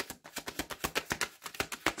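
A deck of tarot cards being shuffled and handled in the hands: a quick, irregular run of light card clicks and snaps.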